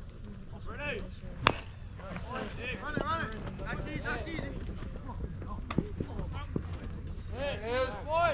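A single sharp crack of a bat hitting a pitched baseball about one and a half seconds in, putting the ball in play. Shouting voices come before it and grow busier near the end as runners take off.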